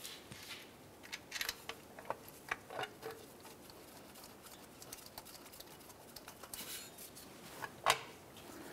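Gloved hands threading a steel starter mounting bolt by hand into the transmission bell housing: faint, scattered light metallic clicks and taps, most of them in the first three seconds, with a brief soft rustle near the end.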